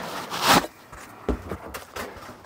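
A polystyrene foam packing insert being pulled out of a cardboard box: one short scraping rustle about half a second in, followed by a few soft low knocks as the contents are handled.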